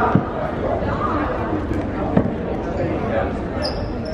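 A basketball bouncing on a hardwood gym floor, two thuds about two seconds apart, over steady chatter of voices in the gym.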